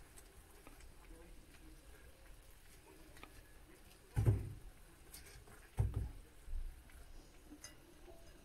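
Quiet handling of a fork lifting chicken wings out of an air fryer's grill basket, with two dull bumps about four and six seconds in and a softer one just after.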